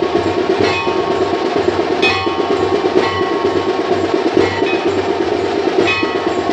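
Temple festival percussion: a bell is struck again and again, each stroke ringing out every second or two, over fast, steady drumming.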